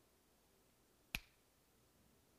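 Near silence of a quiet room, broken once about a second in by a single short, sharp click.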